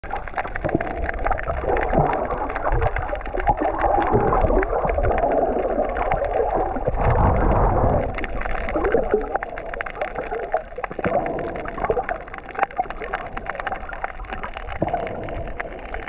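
Underwater reef sound through a camera housing: gurgling and bubbling, heavier in the first half, over a steady fine crackle of clicks.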